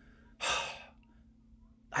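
A man's breathy sigh: one short exhale of about half a second, with no voice in it.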